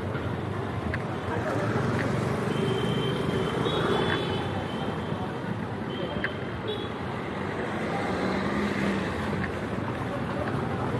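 Busy street traffic ambience: engines of passing cars and motorbikes with people's voices in the background.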